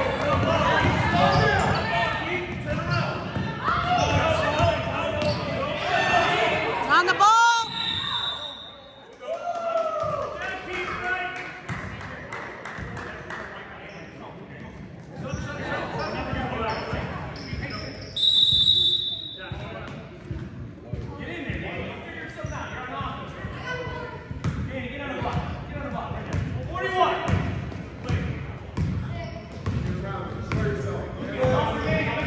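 Basketball bouncing on a hardwood gym floor during a youth game, with spectators' chatter echoing in the large hall. A short whistle blows about two-thirds of the way through.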